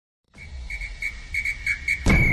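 Intro sound effect: after a moment of silence, a high steady whistling tone comes in over a low rumble and swells in short repeated pulses, building toward the intro's opening hit.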